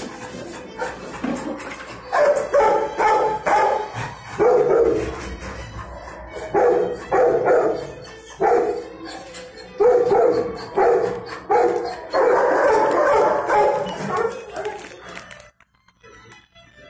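Dogs barking repeatedly, loud barks coming in clusters every second or so from about two seconds in, over music. Everything cuts out just before the end.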